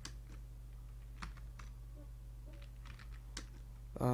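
Faint, scattered keystrokes on a computer keyboard, a few separate clicks spaced irregularly over a steady low hum.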